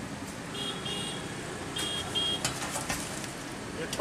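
Fafda frying in a kadhai of hot oil, a steady sizzle, with two pairs of short high-pitched beeps about one and two seconds in and a few sharp clinks a little later.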